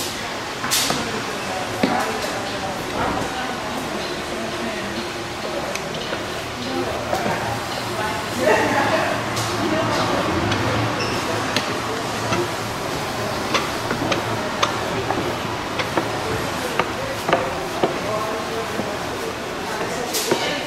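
Scattered short clicks and clunks from brass lever handles being pulled on an interactive display, over a steady murmur of voices.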